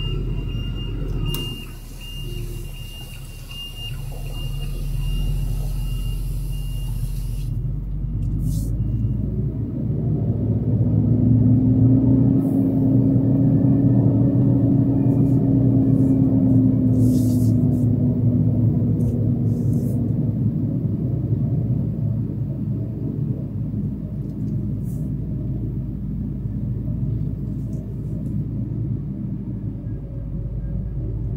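Heavy truck's diesel engine heard from inside the cab while manoeuvring, running under load and rising about ten seconds in, holding for several seconds, then easing back. A steady hiss runs through the first few seconds, with a few short hisses later.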